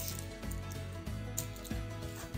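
Quiet background music with steady held tones.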